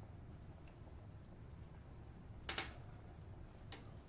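Quiet room with a faint low hum, and a brief mouth sound about two and a half seconds in as a spoonful of creamy rice is tasted, with a couple of faint ticks near the end.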